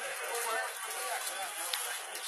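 People's voices talking over a busy, noisy background.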